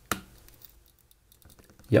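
Small metal tweezers clicking and scraping against a Kindle's metal frame while prying at a glued-down USB socket board. There is one sharp click just after the start, then faint scattered ticks.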